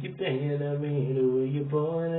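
A man singing a slow vocal line in long held notes, with hardly any clear words; the pitch steps to a new note a few times.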